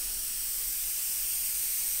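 A steady, even hiss, strongest in the high pitches, holding at one level throughout.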